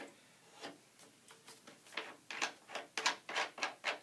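A hand unscrewing a large rubberized clamping knob on a telescope's truss ring, making a quick, irregular series of small clicks and rubbing sounds. They are sparse at first and come thicker and louder in the second half.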